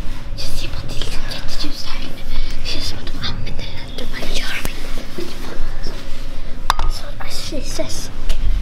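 Children whispering close to the microphone, breathy and irregular, with rustling from the handheld camera and a sharp click about seven seconds in.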